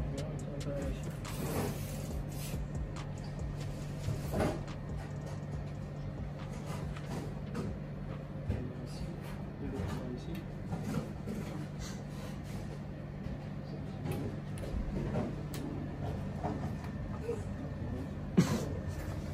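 Steady low hum of a room appliance, a portable air conditioner running, with faint low voices and a few soft knocks and rustles of movement on top.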